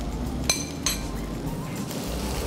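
A metal spoon clinking twice against a ceramic bowl as chopped bell peppers are scraped into a frying pan, over a steady low hum.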